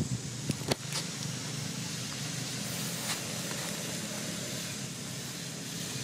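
A steady low engine hum, like a motor vehicle running, over a light hiss, with a few sharp clicks in the first second.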